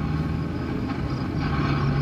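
Steady low engine hum and road noise inside a car's cabin while driving.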